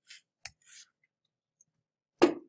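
Faint sounds of working a computer keyboard and mouse: a short rustle at the start, one sharp key click about half a second in with a brief rustle after it.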